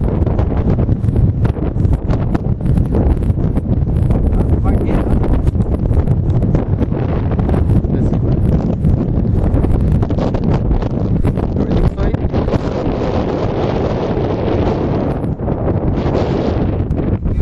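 Wind buffeting the camera microphone: a loud, steady, rumbling rush of noise with constant gusty crackle.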